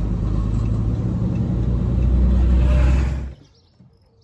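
Engine and road rumble heard inside a moving vehicle's cab, a steady low rumble that grows louder about halfway through, then cuts off suddenly a little after three seconds in.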